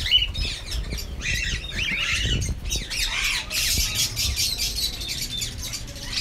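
A colony of cockatiels calling, many squawks and chirps overlapping in a continuous chorus.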